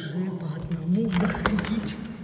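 Tiger cubs calling with wavering, drawn-out cries, with their paws scratching and knocking on a glass door in the second half.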